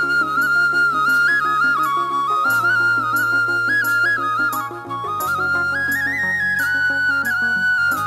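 Bansuri (bamboo transverse flute) playing a stepwise melody of held notes over backing music, whose sustained low notes change every couple of seconds.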